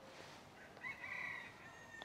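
A rooster crowing faintly, one call of under a second about a second in.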